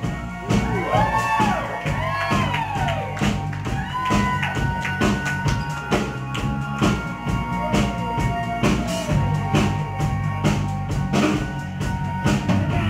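Live band playing an instrumental passage: a drum kit keeps a steady beat under a semi-hollow-body electric guitar and sustained low notes. Gliding, sweeping notes arch up and down in the first few seconds and again briefly later.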